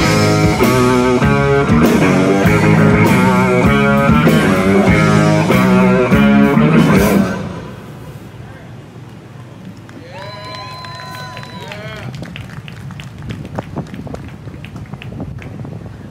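Live rock band playing electric guitars, bass and drums with a singer through a PA system; the song ends about seven seconds in. After that it is much quieter, with a brief high, gliding voice-like call a few seconds later and scattered clicks.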